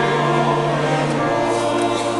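Choir singing sustained chords with keyboard accompaniment; the lowest voice steps down to a new note about a second in.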